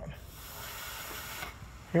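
Air hissing out of a whole-house water filter housing's bleed valve, held open by a screwdriver: trapped air is being burped from the refilled housing. The steady hiss stops abruptly about a second and a half in.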